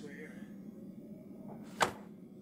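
A car door shuts once with a sharp thump near the end, over a low steady hum.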